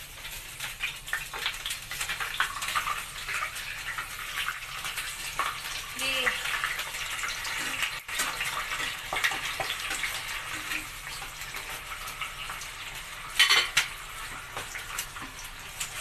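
Whole bakoko fish frying in very hot cooking oil in a pan, a dense sizzle with many small crackling pops. A sharper, louder burst of crackle comes about thirteen seconds in.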